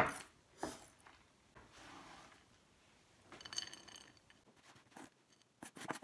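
Chef's knife knocking on a wooden cutting board, then chopped pecans being scraped across the board and rattling into a bowl, with a few light clicks near the end.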